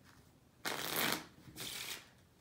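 A deck of playing cards being riffle-shuffled: a rapid fluttering riffle a little over half a second in, then a second, shorter burst of flutter just before the end.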